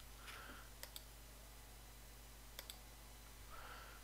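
A few sharp computer mouse clicks over near-silent room tone: a quick pair about a second in and another pair a little past the middle.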